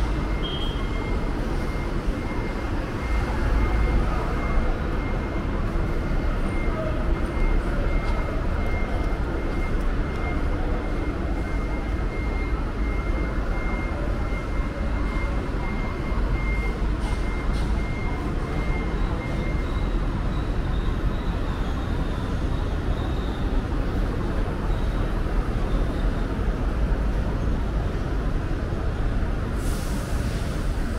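Steady low rumble of street traffic and idling vehicles, with a thin steady high whine that stops about twenty seconds in.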